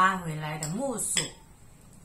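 A single short clink of cutlery against a ceramic plate, about a second in.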